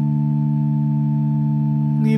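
A sustained accompanying chord droning steadily on a few held low notes, with no voice over it, in the pause between verses of a chanted psalm.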